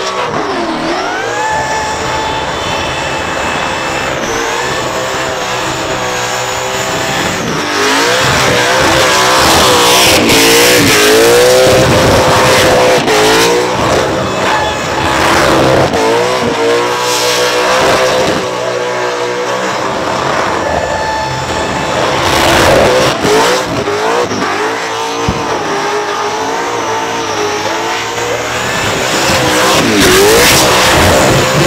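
Supercharged, fuel-injected big-block Chevrolet V8 in an HT Holden doing a burnout, revving hard at high rpm with its pitch rising and falling again and again as the tyres spin in smoke.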